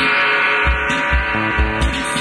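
Live post-punk band music from a soundboard recording: sustained guitar chords over a steady, repeating low drum beat.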